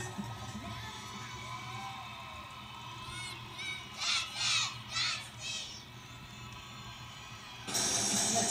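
A squad of young girls shouting a cheer in unison, a few short high-pitched chanted calls about three seconds in, over a steady crowd murmur. Loud music cuts back in just before the end.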